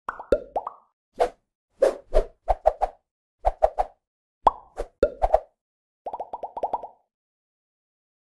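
Cartoon-style plop and pop sound effects of an animated logo intro: a bouncy run of short pops, several dropping in pitch, ending a little after six seconds in with a quick string of about eight rapid blips.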